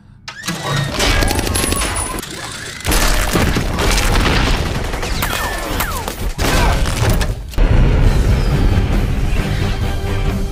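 Action-film soundtrack: music mixed with gunfire, bullets sparking off metal armour, and explosions. Heavier low booms come in about three seconds in and again near eight seconds.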